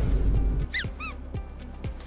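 Comedy sound effects laid over background music: a deep boom at the start, then two short high squeaks about a quarter-second apart.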